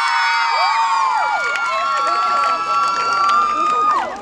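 Many young voices screaming and cheering together in long, high-pitched held cries, several overlapping with gliding pitches, which break off together just before the end.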